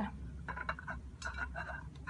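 Scattered light clinks and clicks of a ceramic plate on a stone tabletop, knocked about as a cookie is eaten off it without hands.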